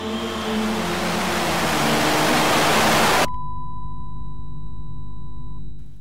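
Trailer sound effect: a hiss of noise swells steadily louder over a low held chord for about three seconds and cuts off abruptly. It gives way to a steady high beep-like tone over a low hum, which stops just before the end.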